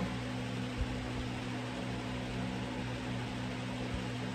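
A steady low hum with an even hiss behind it: constant background noise, like a running fan or appliance, with no other event standing out.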